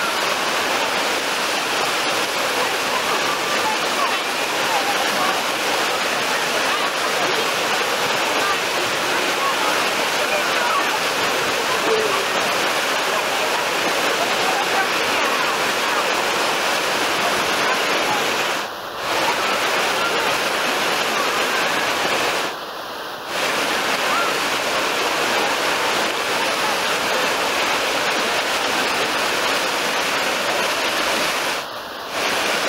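Wave pool's machine-made waves breaking and churning, a steady rush of surf and splashing water that dips briefly twice near the end.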